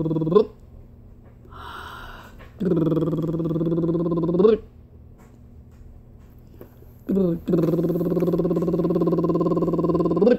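A voice holding long, steady, low hummed notes, wordless: three of them, each about two seconds, with a quick upward slide at the end of some.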